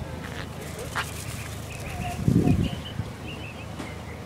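Garden ambience with faint, short bird chirps, a click about a second in, and a brief low rumble about two and a half seconds in that is the loudest sound.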